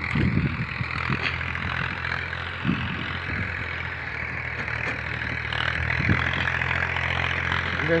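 Farm tractor's diesel engine running steadily, a constant low drone while it works the field.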